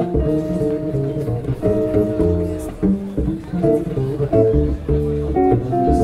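Instrumental break of a live swing number: a guitar plays held chords that change every second or so over plucked upright double bass notes.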